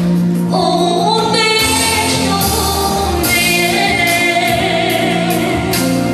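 A woman singing a Romanian gospel song into a handheld microphone over instrumental accompaniment with a steady beat. Her voice comes in about half a second in and holds long notes.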